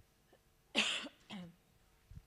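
A person coughing to clear the throat, in two short bursts about half a second apart, the second one smaller.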